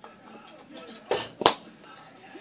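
Two short, sharp smacks about a third of a second apart, a little over a second in; the second is a crisp click and the louder of the two.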